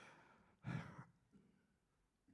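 Near silence broken by one short, breathy sigh from a man about half a second in.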